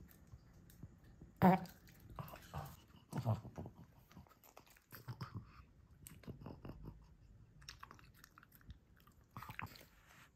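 A pug chewing and biting pieces of fresh fruit, with irregular wet smacking and crunching bites.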